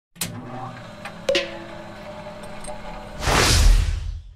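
Intro sound effects: two sharp electronic clicks over a low drone, then a loud whoosh with a deep bass swell rising about three seconds in.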